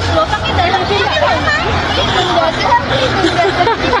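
Hubbub of many people talking at once, adults and children's voices overlapping, with no single voice standing out.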